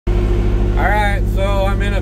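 Engine of an old military extending forklift running steadily, heard from inside its cab, with a man's voice coming in about a second in.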